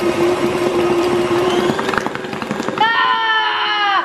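Electric mixer running, beating banana bread batter: a steady motor hum with a fast rattle from the beaters. Near the end a child lets out a high, drawn-out vocal sound over it.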